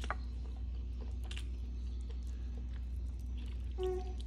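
Quiet eating sounds, soft mouth clicks and chewing of rice eaten by hand, over a steady low hum. A brief hummed 'mm' comes near the end.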